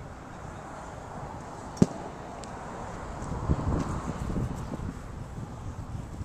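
A golf iron striking a ball off a driving-range mat: one sharp click about two seconds in.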